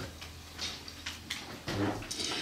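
Faint clicks and light handling noise from a handheld microphone and a paper booklet, with a short low vocal sound near the end.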